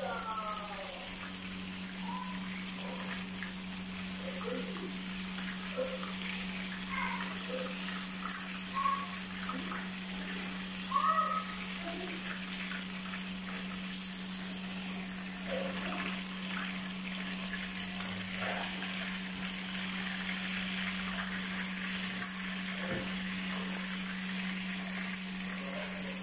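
Fish frying in hot oil in a pan: a steady sizzle, with a few light clicks of metal tongs turning the pieces, over a steady low hum.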